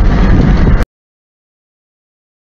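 Loud, low rumble inside a car on a rain-wet dirt road, cutting off abruptly less than a second in, followed by complete silence.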